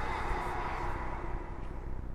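Steady, low rumbling ambience with a hiss over it: a horror film's dark sound-design bed, with no distinct events.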